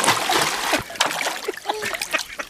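Swimming-pool water being splashed by a swimmer's arm or leg kicking at the surface, heaviest in the first second, then smaller separate splashes.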